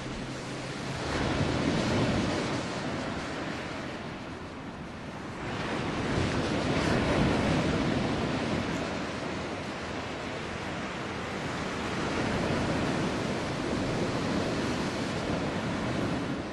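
Ocean surf breaking on rocks, swelling and easing every five or six seconds.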